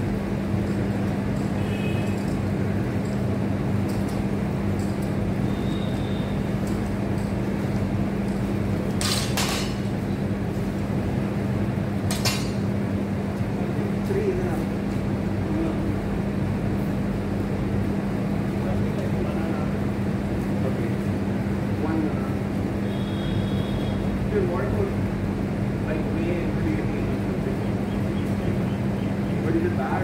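Two sharp metallic clanks with a short ring, about nine and twelve seconds in, as loaded barbells with bumper plates are set down on paving, over a steady low hum.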